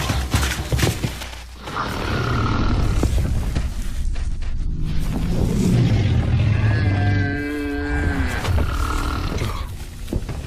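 Cartoon soundtrack of music and animal sound effects, with a growl-like roar. About seven seconds in comes a drawn-out pitched animal call lasting about a second and a half.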